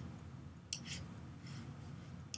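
A few faint, short clicks against quiet room tone, two close together about three-quarters of a second in and another about halfway through.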